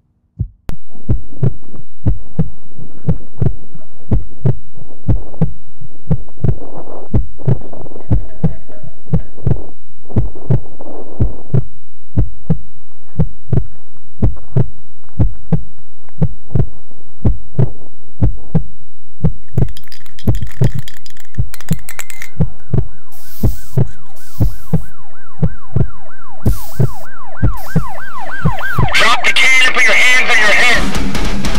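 Heartbeat-like low thuds about twice a second, starting about a second in, joined in the second half by a wavering siren that grows louder near the end, typical of a police siren.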